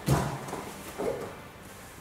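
Judo gi fabric rustling and bare feet shifting on the mat as two judoka take grips and step. There is a soft thump with rustling at the start and a smaller one about a second in.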